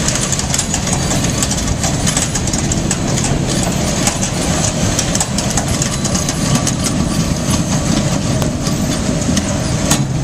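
1993 Zeno ZTLL 1600/1730 grinder running steadily with its chip conveyor, a constant loud machine noise with a scatter of small ticks from the ground wood chips.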